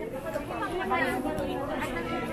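Background chatter of several people talking at once, with overlapping voices and no single voice standing out.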